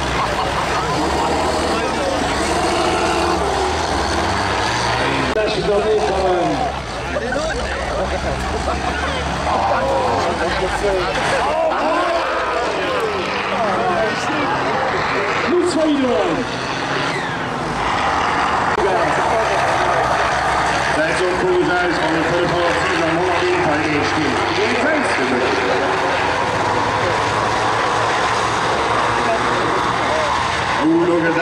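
Diesel engines of old combine harvesters racing under load, a steady low drone that is strongest in the first few seconds. A public-address announcer talks over them.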